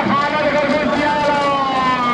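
A man's voice calling in long, drawn-out chanted notes that glide slowly in pitch.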